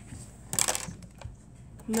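A pen scribbling on paper, crossing out a worked problem: a short scratchy burst about half a second in, with a few fainter strokes after it.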